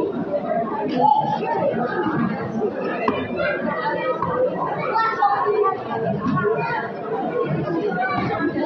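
A crowd of people chatting at once, many voices overlapping into a steady murmur of conversation.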